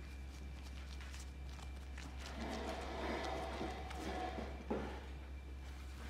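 Hands working a small ball of bread dough on a floured wooden table: a couple of seconds of rubbing and handling, ending in one sharp tap as it is set down, over a steady low hum.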